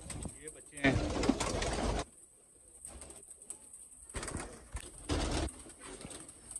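Domestic pigeons cooing in a loft, with two bursts of rustling noise, about a second in and again about five seconds in.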